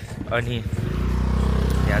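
A motorcycle engine running close by, coming in about a second in and growing louder.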